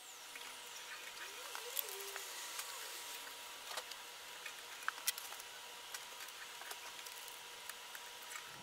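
Quiet outdoor background hiss with a few small scattered clicks and taps as tape is pressed along the edges of an empty glass aquarium.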